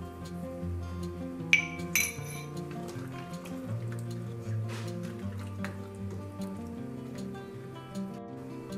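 Background music with sustained notes, over which a spoon clinks sharply twice against a stainless steel cooking pot, about half a second apart, a second and a half in. Fainter knocks follow as the stew is stirred.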